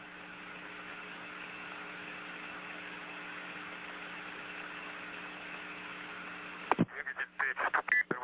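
Steady hiss with a low, even hum from an open radio downlink channel during the Soyuz's third-stage flight. Near the end a click is followed by a brief narrow-band radio voice.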